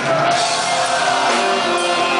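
Live rock band with drums and electric guitars playing a pop song, with a female lead vocal.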